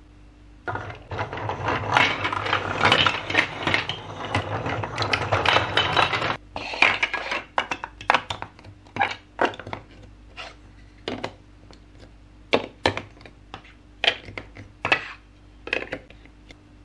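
Large plastic toy building blocks clattering together in a dense run for about five seconds, as of pieces being sorted through in a pile, then separate clicks and taps as blocks are pressed onto one another and track pieces are set in place.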